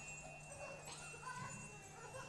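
Quiet improvised music: a steady high tone held over a low hum, with small scattered squeaks and short gliding sounds.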